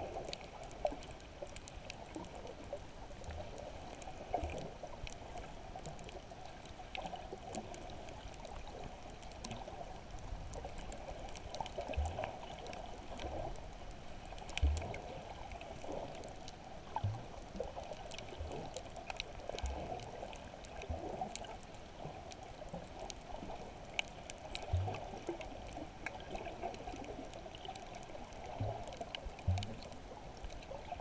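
Underwater water noise heard through an action camera's waterproof housing: a steady muffled wash with faint scattered clicks. Short dull low thumps come every second or two.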